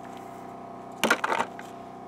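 Pieces of broken rock clicking and crackling together in a gloved hand, a short burst about a second in.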